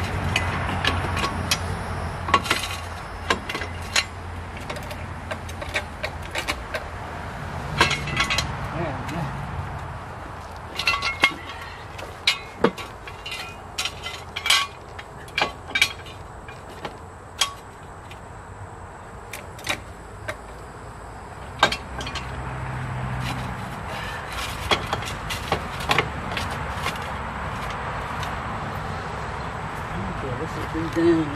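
Scattered metal clinks and knocks of steel jack stands and a small floor jack being set and adjusted under a golf cart, over a steady low hum.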